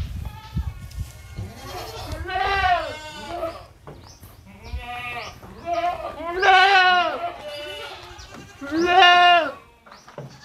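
Boer goats bleating: three long, loud, wavering calls a few seconds apart, with shorter bleats between them.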